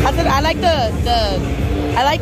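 Nearby voices talking over background music and the murmur of a busy exhibition hall.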